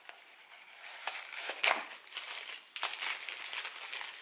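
Thin wrapping around a pair of sunglasses crinkling and rustling as it is handled and pulled open by hand, in irregular crackles that start about a second in.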